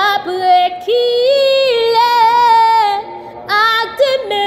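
A woman singing a Haitian Creole gospel song solo, in long held notes that glide between pitches. She breaks briefly for a breath about three seconds in, then sings on.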